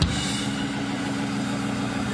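A church band's keyboard holding a steady low organ chord, opened by a sharp drum hit right at the start.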